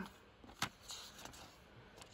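Faint handling of a comic book and paper sheets: soft rustling with one light click a little past halfway.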